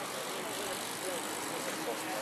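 Outdoor street ambience: a steady hiss with faint, indistinct voices of people in the background.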